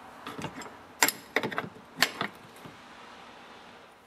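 Steel open-end wrenches clicking and clinking on two hex bar nuts as the top nut is tightened down against the bottom one on a chainsaw bar stud: a few sharp metal clicks, spread over the first two seconds or so.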